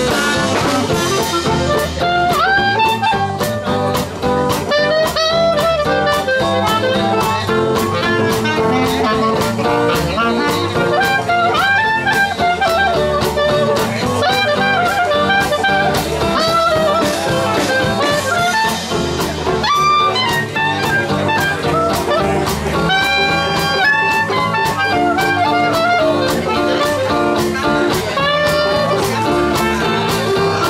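Live traditional jazz band playing an instrumental chorus: clarinet, trumpet and trombone weaving melodic lines over banjo, guitar, string bass and drums keeping a steady beat.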